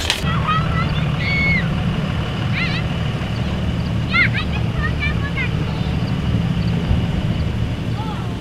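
A steady low rumble with a few short, high-pitched chirping calls over it.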